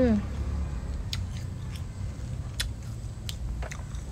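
A person chewing crunchy young green tamarind: a handful of separate crisp crunches over a steady low rumble.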